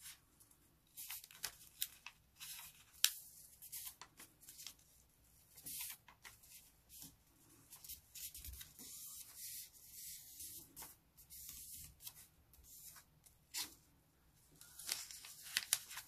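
A sheet of origami paper rustling and crackling faintly in short, scattered bursts as it is folded inward and the crease is pressed flat with the fingers.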